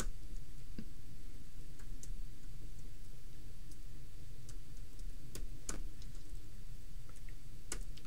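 Keystrokes on a computer keyboard: a few sharp, irregularly spaced clicks over a low, steady background hum, with a quick pair near the end.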